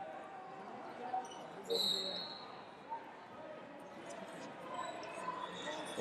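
Faint background of a large sports hall: distant chatter of many people. A brief high, steady tone sounds about two seconds in.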